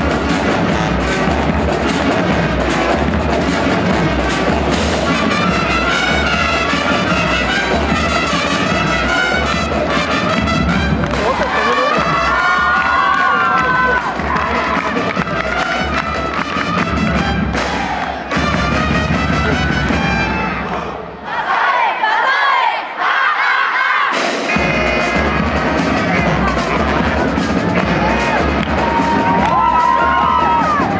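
A marching band of brass (trombones, sousaphones) and drums playing loudly, with an audience cheering along. About two-thirds of the way through, the low brass and drums drop out for a few seconds, then the drums come back in.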